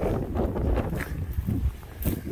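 Strong gusty wind buffeting the microphone, a low rumble that eases off near the end.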